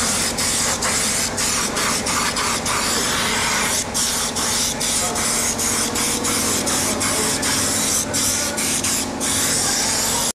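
Air-fed underbody coating gun spraying underseal into a car's wheel arch: a loud, steady hiss of compressed air and coating, broken by many very short pauses.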